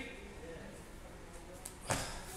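Feet landing from a jump on a gym floor: one sharp thump near the end.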